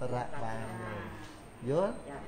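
A man's voice drawing out one long, low vowel that sags slightly in pitch for about a second and a half, then a short syllable rising in pitch near the end.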